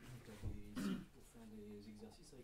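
A person clearing their throat about a second in, after a low thump, followed by a voice starting to speak.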